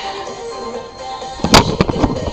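Loud knocks and bumps of a webcam being handled and moved, starting about one and a half seconds in, over faint background music.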